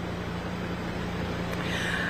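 Steady outdoor background noise: an even hiss with a low, steady hum beneath it.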